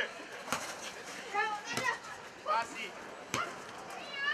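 Children's voices calling and shouting across a football pitch, with three sharp thuds of a football being kicked, about a second apart.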